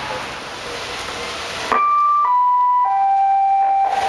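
Steady rain hiss. About two seconds in, it cuts off abruptly and a three-note chime follows: three clear held tones, each lower than the one before, the last held longest.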